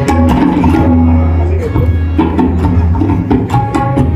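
Tabla played solo in a fast, dense run: sharp ringing strokes on the right-hand dayan over deep, booming bass strokes on the left-hand bayan. A harmonium holds a repeating melodic accompaniment underneath.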